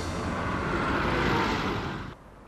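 A van driving past: a steady rush of engine and tyre noise that swells about a second in and cuts off suddenly at the end.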